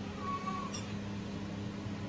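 Cumin seeds sizzling faintly in hot oil in an iron kadai, over a steady low hum, with a brief faint high tone near the start.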